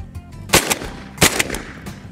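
Shotgun fired twice in quick succession, the shots about three-quarters of a second apart, each with a short echo.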